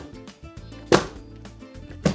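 Aluminium baking sheet of piped macaron batter dropped onto a towel-covered counter, sharp knocks about a second apart, to release trapped air bubbles from the batter. Background music plays throughout.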